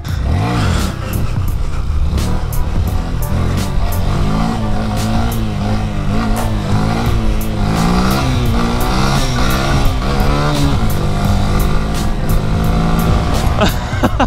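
Honda Grom's 125cc single-cylinder engine revved up and down over and over as the rider pulls wheelies, with a steady rumble of riding underneath. Background music with a steady beat plays over it.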